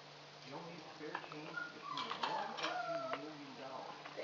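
A soft, indistinct voice with a few sharp clicks of small items being handled.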